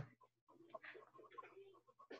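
Near silence: faint room tone with a low steady hum and a few soft, short ticks.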